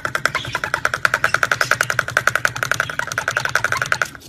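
A parrot rapidly tapping a metal utensil against a plastic cup, a fast even rattle of about a dozen ringing taps a second.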